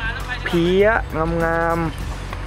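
A man's voice in drawn-out, sing-song exclamations, bending in pitch, with the last note held steady for almost a second.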